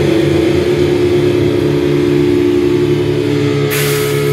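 Live death/thrash metal band playing a heavily distorted, sustained droning chord on guitar and bass, with a low note pulsing underneath. Cymbals come in near the end.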